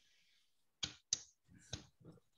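A few faint, sharp clicks at a computer, starting a little under a second in, like keys or a mouse being pressed.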